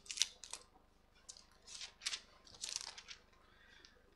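Pages of a book being leafed through to find a passage: a string of short, soft, irregular paper rustles and light clicks.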